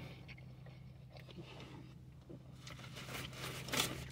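Faint, irregular chewing of a mouthful of burger over a steady low hum, with one slightly louder brief mouth or rustling noise near the end.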